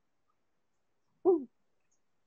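A single short vocal sound, about a quarter second long and falling in pitch, just past the middle of an otherwise near-silent stretch.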